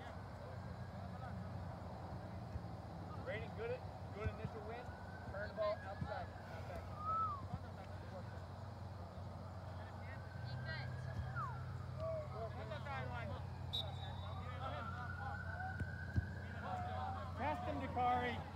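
Players calling and shouting to each other across an open soccer pitch, distant and indistinct, over a steady low hum. The calls come in scattered bursts throughout, with several longer drawn-out shouts toward the end.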